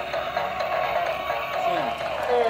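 Background music with a steady sustained tone, with faint voices under it.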